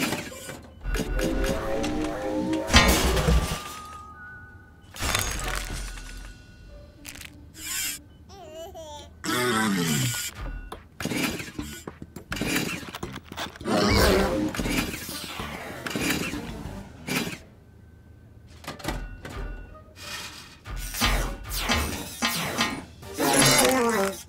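Cartoon soundtrack: music with comic sound effects, several sudden crashes and impacts, and short wordless character vocal noises. A falling glide in pitch comes around the middle.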